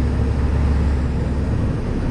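Iveco EuroStar truck's diesel engine and road noise heard from inside the cab while driving: a steady low drone that eases off near the end.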